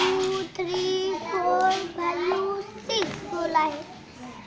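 A young boy chanting in a sing-song voice, a string of drawn-out, held syllables, as he counts along a number chart in Marathi.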